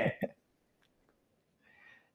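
A man's brief laugh at the very start, cut off within a moment, then near silence: a pause before the reply.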